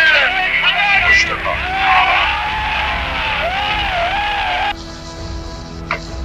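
Raised, excited voices with long rising and falling pitch over steady background music. About three-quarters of the way through the voices cut off abruptly, leaving only quieter music.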